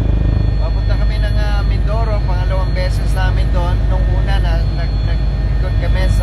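Helicopter engine and rotor noise heard from inside the cabin in flight: a loud, steady low drone.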